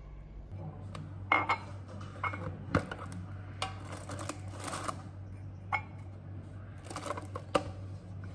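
A red metal tea tin being opened and handled on a stone kitchen counter, with several sharp clinks and knocks as the lid comes off and is set down, and rustling between them. A steady low hum runs underneath from about half a second in.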